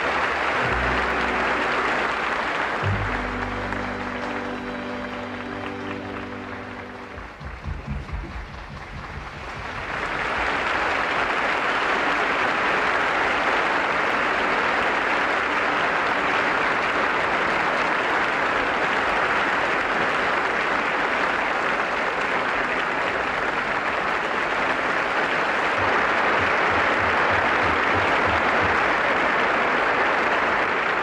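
The orchestra plays the closing chords of the ballet pas de deux with audience applause over them. After a short lull about eight seconds in, the theatre audience breaks into a long, steady round of applause from about ten seconds in.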